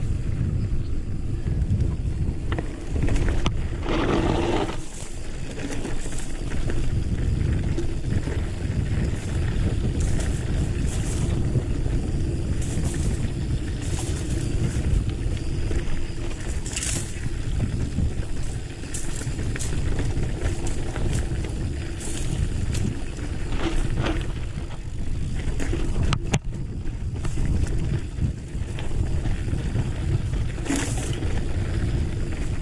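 Mountain bike ridden along a dry dirt singletrack: a steady rumble of tyres on the trail and wind buffeting the camera microphone, with scattered short clicks and rattles from the bike.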